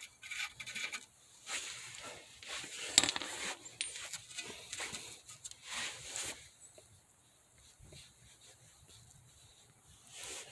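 Faint metallic scraping and small clicks as a nut is spun off a rusty lower ball-joint stud by a gloved hand, with one sharper click about three seconds in.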